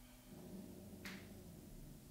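Faint rustle of a person settling onto a yoga mat and moving her arms, with a single light click about a second in.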